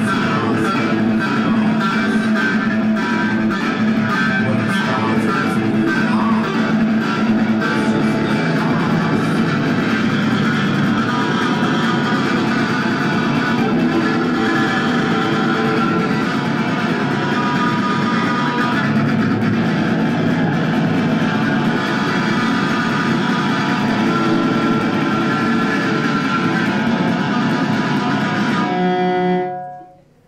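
Electric guitar played live and loud, a continuous wash of sustained notes and chords that stops suddenly near the end.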